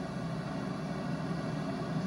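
Steady background hiss with a faint low hum, with no distinct event.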